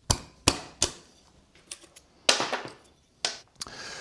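A hand-held bench chisel paring into a wooden block, making a series of sharp, irregular cracks as chips split away, about eight in four seconds.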